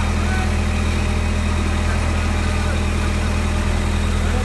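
Diesel engine of a mobile hydraulic crane running steadily at a constant speed while the crane holds and swings a suspended load.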